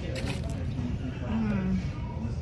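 Voices in a busy restaurant dining room, with a short crackle just after the start.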